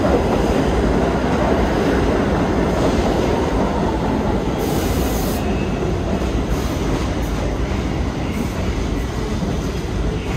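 New York City subway 2 train of R142 cars pulling into the station and slowing along the platform, a steady rumble of wheels on rail that slowly fades as it brakes. A brief high hiss comes about halfway through, then a few shorter high squeals.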